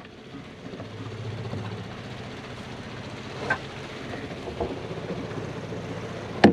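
Small electric low-pressure transfer pump running steadily, sucking stale, contaminated fuel out of the tank through a hose, with a couple of light knocks of parts being handled.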